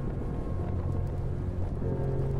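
Harley-Davidson V-twin motorcycle cruising on the road: a steady low engine and exhaust rumble with wind on the microphone.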